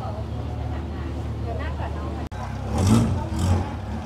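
An engine running with a steady low hum, with faint voices in the background. A little past halfway the sound cuts out for an instant, then a louder rushing noise swells up twice near the end.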